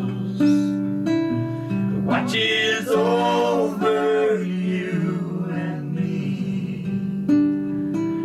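Three voices singing a song together in harmony over strummed acoustic guitar, with held guitar chords under the vocal lines.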